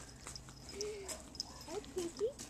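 A few faint, short vocal calls, each rising and falling in pitch, with light clicks and rustles between them.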